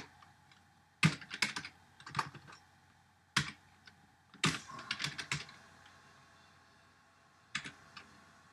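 Computer keyboard typing: short bursts of keystrokes with pauses between them, then a longer gap of about two seconds before a few more keys near the end.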